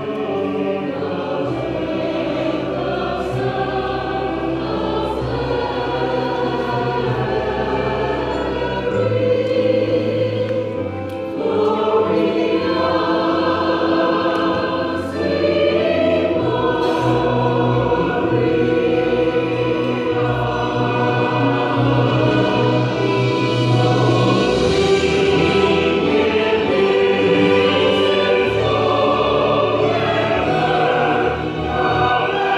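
Mixed church choir of men and women singing, with an accompaniment holding long low bass notes that change every few seconds. The singing grows a little louder in the second half.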